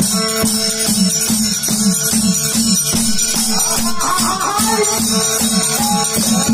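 Live folk ensemble music: a dholak drum beats a fast, even rhythm, its low strokes bending in pitch, over jingling hand percussion and a steady held note.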